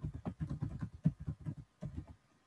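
Typing on a computer keyboard: a quick, irregular run of key clicks, about five or six a second.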